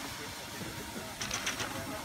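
Faint laughter, followed by a few short high hissy scrapes about a second and a half in.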